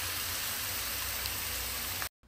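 Cubes of raw beef sizzling steadily in hot oil in a cast iron pan over high heat. It is the sound of a well-heated pan searing the meat, which the cook says you must hear when the meat goes in.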